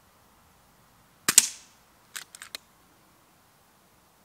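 A single shot from an FX Dynamic Compact .177 pre-charged pneumatic air rifle: a sharp crack about a second in. About a second later comes a quick run of four or five mechanical clicks, the side cocking lever being cycled to load the next pellet.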